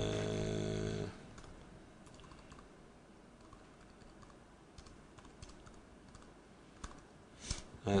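Faint computer-keyboard typing: scattered soft keystrokes as a short line of code is typed, following a held 'uh' of hesitation in the first second.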